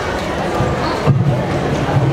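Three dull, low thuds about half a second apart, heard over voices.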